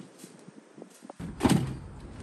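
A single loud thump about one and a half seconds in, with a short ring after it, following a few faint clicks.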